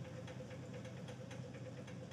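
A faint, steady low mechanical hum with one held tone and about four light ticks a second, like a small motor running.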